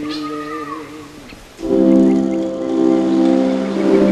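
A man's sung note held and then falling away, followed about one and a half seconds in by a loud, sustained chord of background music.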